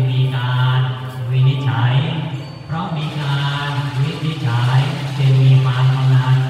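Buddhist chanting: voices recite on one low, nearly unchanging pitch, phrase after phrase with brief pauses for breath.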